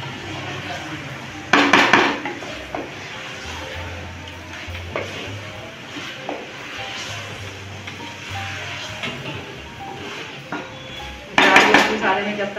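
A wooden spatula scraping and knocking against the sides and bottom of an aluminium pot while meat is stirred and fried in thick masala. There are two loud, sudden scrapes, about a second and a half in and near the end.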